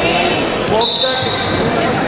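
People's voices in a gym around the wrestling mat, with a steady high-pitched tone starting a little under a second in.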